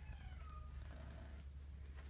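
Tabby cat giving one short meow near the start.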